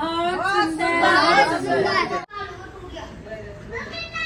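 Several people's voices talking over one another. They cut off suddenly a little over two seconds in, and quieter voices follow.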